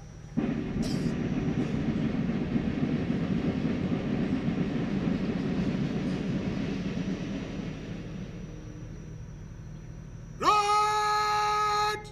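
A massed, drawn-out "hooray" cheer from the ranks of soldiers, starting about half a second in and slowly fading away over several seconds. Near the end a single man's long, steady shouted call sounds out, leading the next of the three cheers.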